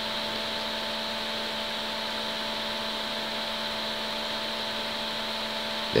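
Steady background hum and hiss that holds unchanged throughout, with a constant low tone and a few higher steady tones over it.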